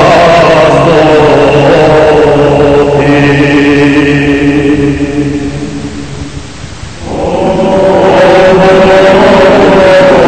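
Choral church chant sung in long, steadily held notes. It dies down between about five and seven seconds in, then a new held chord enters.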